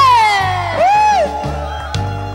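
Trumpet blown in sliding, wavering notes: a loud note that slides downward at the start, a short rising-and-falling note about a second in, then a held note. A backing track with a steady bass beat plays underneath.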